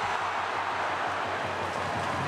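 Football stadium crowd noise: a steady, even wash of many voices.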